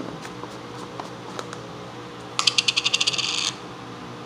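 A container of dry fish food being shaken: a rapid rattle of hard little clicks lasting about a second, a little past halfway through, after a few faint ticks.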